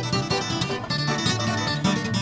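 A bluegrass string band playing an instrumental breakdown, with acoustic guitar, dobro and mandolin picking over a steady bass line.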